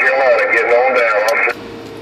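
A distant station's voice coming over a President HR2510 radio's speaker, with the thin, cut-off sound of radio speech. The transmission drops out about a second and a half in, leaving a short stretch of hiss.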